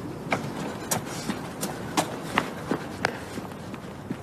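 Hurried footsteps on a hard pavement, about three quick steps a second.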